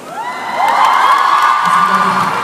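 A large crowd of mostly young women screaming and cheering. Many high voices rise in pitch together shortly after the start, then hold one long, loud scream.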